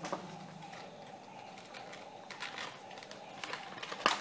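Faint handling noise of a cardboard toy-box insert, with a few light clicks and rustles as a small plastic figurine is worked out of its slot.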